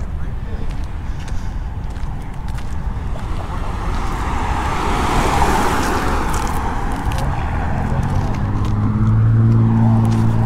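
A car driving past on the street: its road noise swells to a peak about halfway through, then fades. Near the end a deeper steady engine hum from a vehicle comes up.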